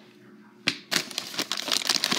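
A crinkly plastic bag being handled: a sharp crackle about two-thirds of a second in, then dense, continuous crinkling.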